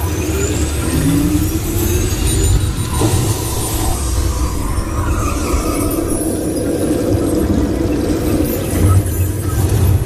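Test Track ride vehicle moving through its dark show scene: a steady low rumble, with electronic tones from the ride's soundtrack gliding upward over it.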